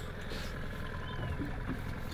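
Boat engine idling in neutral, a steady low rumble.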